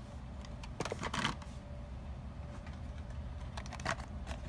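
Hot Wheels blister cards being handled: a quick cluster of light plastic clicks and crinkles about a second in and again near the end, over a low steady background hum.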